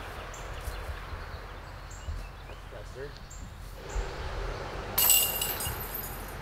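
A thrown golf disc striking the metal chains and frame of a disc golf basket about five seconds in: a sudden metallic clash with jingling that rings on and dies away over about a second. Before it, only faint outdoor background.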